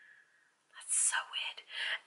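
A woman whispering a few words, breathy and unvoiced, starting about a second in after a brief near-quiet pause.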